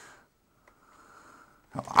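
Mostly quiet: faint breaths through the nose at the start and again about a second in, and a light tick from handling the boxed webcam. A man starts speaking near the end.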